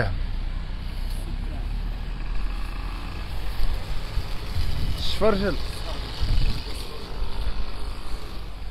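Outdoor street-market background: a steady low rumble with a general hum of activity, and a man's short "ha" about five seconds in.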